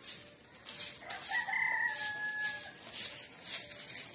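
A rooster crowing once, a single drawn-out call starting about a second in and lasting under two seconds, over a high hissing pulse that repeats about twice a second.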